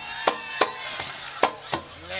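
Sharp percussion clicks in an even beat, about three a second, from the Nora accompaniment, with a wooden sound to them, such as the small hand clappers that keep time for the dancers.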